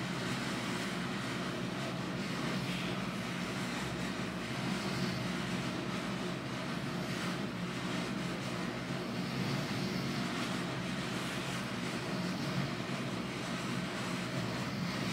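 Room air conditioner running: a steady hum with a rush of air.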